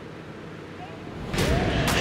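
Hot air balloon propane burner firing: a loud rushing roar that starts suddenly about one and a half seconds in, after a short stretch of quieter background noise.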